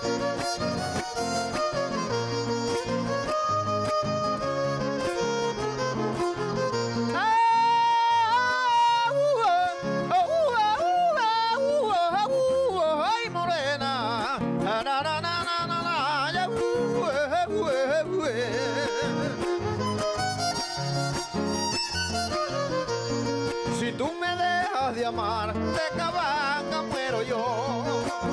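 Violin and strummed acoustic guitars playing a Panamanian torrente, the traditional melody for décima singing. From about seven seconds in, a man's voice comes in with a long, drawn-out singing line that bends and wavers in pitch over the accompaniment.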